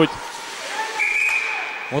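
A single whistle blast: one steady high tone held for about half a second, about a second in, over faint arena background noise.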